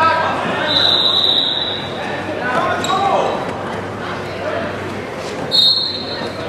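Voices shouting in an echoing gym hall, with a steady high whistle held for about a second near the start and blown again briefly near the end.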